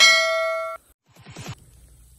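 A bright, bell-like ding sound effect from a subscribe-button overlay animation, ringing for under a second and then cutting off abruptly. A brief faint rustle-like noise follows about a second later.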